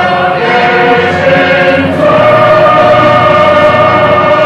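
A choir singing a hymn in long held chords, with the chord changing about two seconds in.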